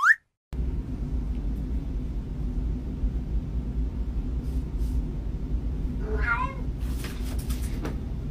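A house cat gives one short meow about six seconds in, over a steady low background rumble.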